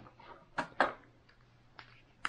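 A few light clicks and taps of plastic parts being handled: two close together about half a second in and another near the end, as the helping hand's 3D-printed 3-port adapter, with an alligator clamp, is turned in the hands.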